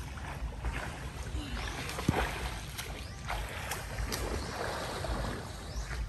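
Water sloshing and lapping around a small unpowered boat moving on a river, over a low uneven rumble. A few short knocks sound through it, the sharpest about two seconds in.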